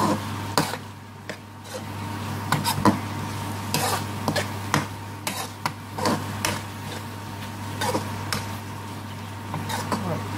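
A metal spoon scraping and knocking against a wok as chicken and onions are stirred in a thick frying spice sauce, with irregular clicks about once or twice a second. A steady low hum runs underneath.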